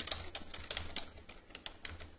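Typing on a computer keyboard: a quick, irregular run of key clicks, quieter than the voice around it.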